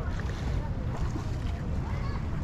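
Wind buffeting the camera microphone as a steady low rumble, with faint distant voices.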